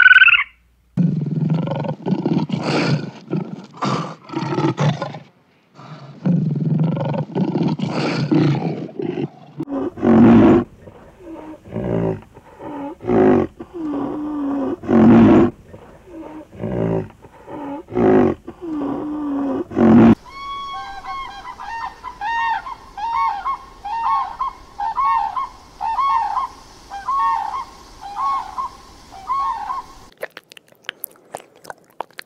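A run of different animal calls. Low growling roars fill the first nine seconds, then come separate deep grunts, and for the last ten seconds a fast series of higher, repeated calls.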